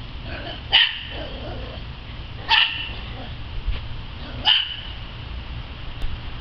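A small dog barking three times, short high-pitched barks about two seconds apart.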